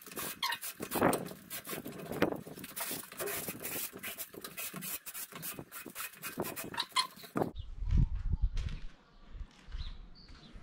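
A coloured rock scraped across a concrete slab to draw lines: quick, rough scratching strokes that stop about seven seconds in.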